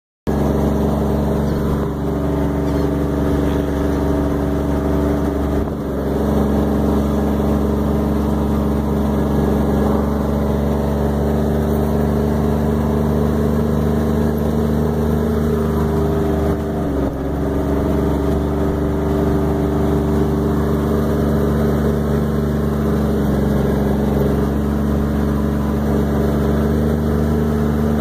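Engine of a vehicle driving slowly across sand, heard from inside the cab as a steady drone with a few brief dips.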